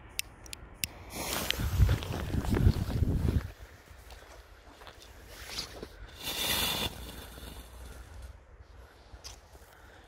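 A few sharp clicks of a lighter, then the ildsøgle firework powder packed into a crackling-ball shell burns off with a loud hissing rush lasting about two seconds. A second, shorter hiss follows a few seconds later.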